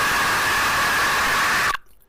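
A man's scream, heavily distorted and clipped into a harsh, static-like noise. It holds steady for about two seconds and cuts off abruptly near the end.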